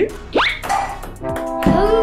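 Background music: a quick rising whistle-like sound effect about half a second in, then held chords coming in from about one and a half seconds.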